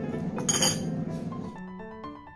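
Background music with a single sharp clink of a metal spoon against a dish about half a second in; the music turns to plain piano notes near the end.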